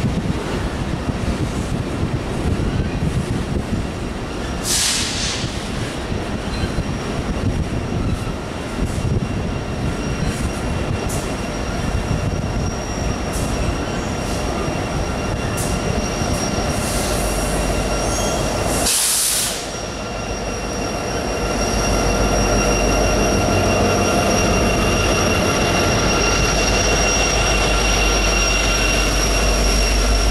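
Empty coal hopper cars rolling by with a steady grinding rumble and thin, steady wheel squeal, broken by two short bursts of high hiss. In the second half a trailing diesel locomotive passes, and a deep engine rumble takes over for the last several seconds.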